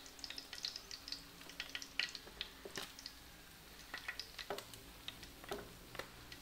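Fish frying in a pan of hot oil: a light, irregular crackle of spitting oil, with a few louder clicks as tongs lift the fish out of the pan.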